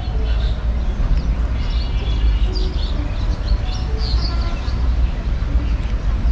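Small birds chirping several times over a steady low rumble.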